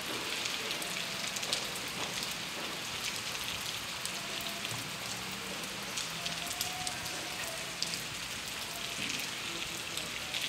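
Steady rain falling on a wet paved street and sidewalk: an even hiss.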